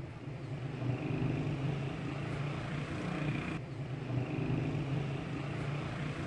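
A steady low machine hum, with a faint high whine over it about a second in that drops away after a few seconds and then returns.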